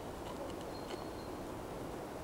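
Quiet outdoor ambience: a steady background hiss, with a faint thin high whistle for about half a second around the middle.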